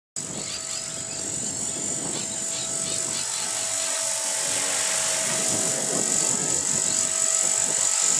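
Align T-Rex 450 electric RC helicopter in flight: a steady high-pitched whine over the buzz of its rotors, growing steadily louder as it comes in closer.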